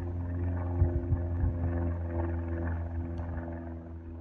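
A small engine, likely a petrol golf cart's, running steadily as a low, even hum, with a couple of faint knocks about a second in.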